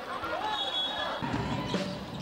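Basketball arena ambience heard from the stands: faint crowd voices and music, with a low rumble coming in after about a second.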